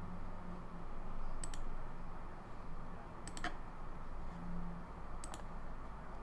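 Computer mouse button clicks, three in all, each a quick double tick, spaced about two seconds apart, over a faint steady hum.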